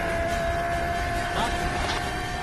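Cartoon energy-beam sound effect: a steady whine that slowly creeps up in pitch over a rumbling hiss as the beam strikes the statue.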